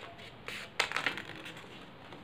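Origami paper rustling and crinkling as it is folded and handled, with a few short crackles about halfway through.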